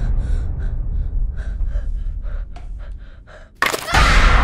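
A person gasping in quick, short breaths, about ten in a row, over a steady low rumble. The rumble fades, then a sudden loud hit comes shortly before the end.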